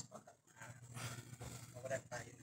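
Faint speech: a man talking quietly over a video-call connection.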